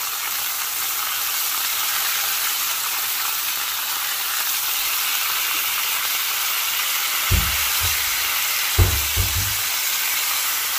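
Lamb shoulder chops sizzling steadily as they sear in oil in a nonstick frying pan. Two dull, low thumps come near the end.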